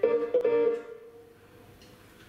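Electric guitar playing two clean plucked notes that ring and fade out within the first second, then a brief pause before the next phrase.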